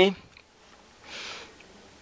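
A single short sniff, a quick breath drawn in through the nose about a second in, following the end of a spoken word.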